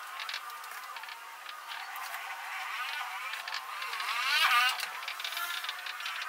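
Marker pen scratching and squeaking across a whiteboard in quick strokes, with rising and falling squeals that are loudest about four to five seconds in.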